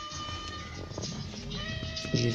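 Music playing from a Sony car stereo tuned to FM radio, heard through the car's speakers, with long held notes.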